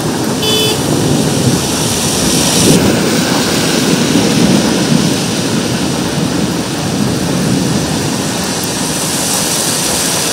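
Heavy rain pouring on a road while cars drive through the wet, a steady loud noise with a low rumble underneath; the high hiss eases off about three seconds in.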